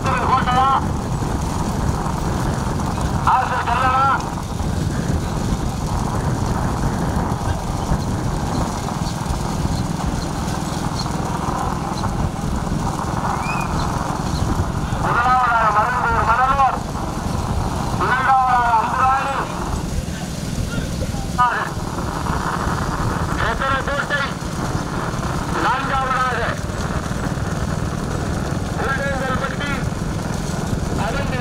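Bullock cart race heard from a motor vehicle running just ahead: a steady engine and road rumble throughout, with loud men's shouts in bursts of about a second, coming several times.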